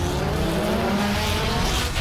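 Race car engine sound effect accelerating, its pitch rising steadily for nearly two seconds.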